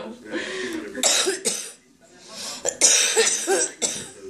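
A person coughing hard after a dab hit from a glass bong, in two fits with a short gap between them, mixed with laughter.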